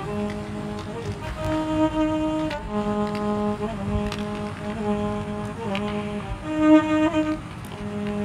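Violin played slowly with the bow in long, held notes, mostly on one low note, rising to a higher note twice, about two seconds in and near the end, the second time loudest. Faint scattered clicks sound among the notes.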